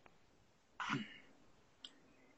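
Faint room tone over a video-call line, with one short breathy burst from a person about a second in and a small click near the end.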